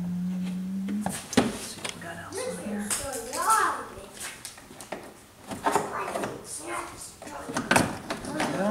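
Plastic clicks and knocks from a pickup's door trim panel being lifted off its retaining clips, two sharp ones about a second in and more near the end. An untranscribed voice sounds in between.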